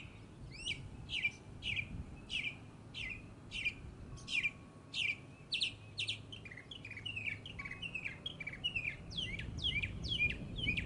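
Songbirds chirping: a steady run of short, sharp chirps that sweep downward in pitch, about one and a half a second, with more birds joining in overlapping chirps from about halfway through.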